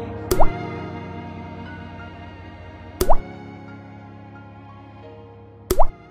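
Three water-drop sound effects, each a short plop with a quick rising pitch, about two and a half seconds apart, over music that fades away.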